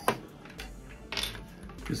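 Plastic Perfection game pieces being snapped out of their plastic runner frame: a sharp snap right at the start and another short crackle a little past a second in.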